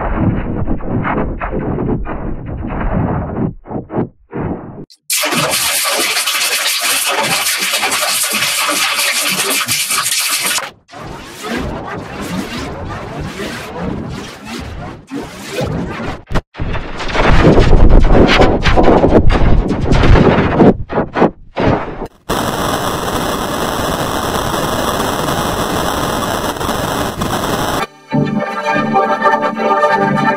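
Heavily effects-processed, distorted logo audio in a series of abruptly switched segments, mostly harsh and noisy. Near the end it changes to a sustained organ-like pitched tone.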